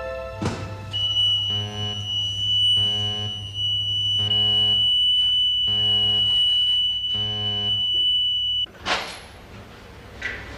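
A clunk about half a second in, then an electronic security alarm sounding five evenly spaced buzzes over a steady high whine for about eight seconds, cut off by a loud clunk near the end.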